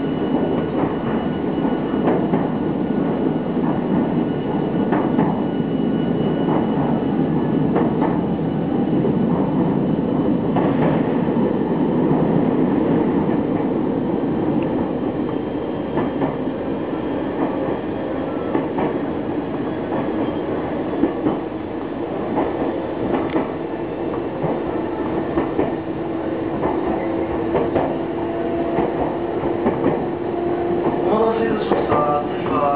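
Nankai electric commuter train running, heard from inside the front of the car: a steady rumble of wheels on rail with scattered clacks from rail joints. A steady hum comes in during the second half.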